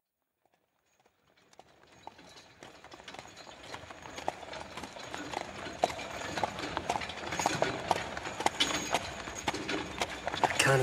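Horses' hooves clip-clopping on a hard street, a horse-drawn carriage passing. It fades in from silence about a second in and grows steadily louder.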